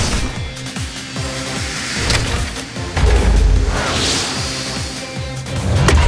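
Action music for a cartoon fight, laid over sound effects of flying rocket fists: swooshes and booming impacts, the heaviest about three seconds in and another near the end.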